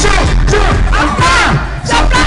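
Loud live music with heavy bass at a club gig, with voices shouting and singing over it from the stage and crowd. The sound drops away briefly shortly before the end.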